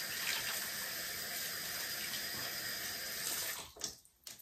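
Bathroom sink tap running steadily, shut off near the end.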